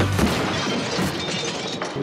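Glass shattering, followed by many small pieces falling and scattering for about two seconds.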